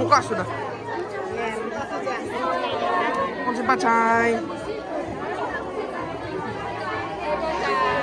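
Group chatter: several people talking at once. One voice calls out a drawn-out phrase a little before the middle.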